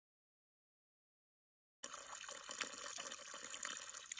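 Silence, then from about two seconds in, water running steadily from a pipe into a cattle stock tank.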